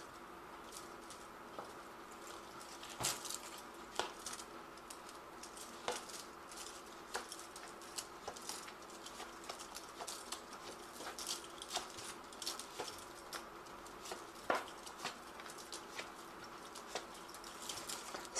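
Deviant Moon tarot cards being shuffled and drawn by hand: soft, irregular card flicks and taps over a faint steady hum.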